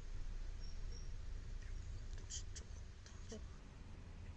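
Soft scratching and rustling of fingers rubbing a small kitten's fur and cheeks, over a low rumble of handling noise, with a few faint clicks about two and a half seconds in.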